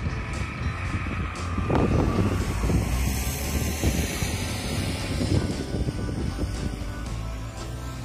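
Vehicles passing on the toll road below, with wind rumbling on the microphone; a louder pass swells about two seconds in.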